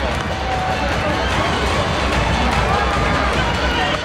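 Steady hubbub of a baseball stadium crowd, with spectators' voices talking nearby.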